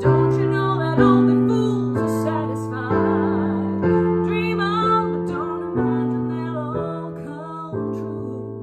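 A woman singing a slow ballad melody with vibrato, accompanied by piano chords struck about once a second.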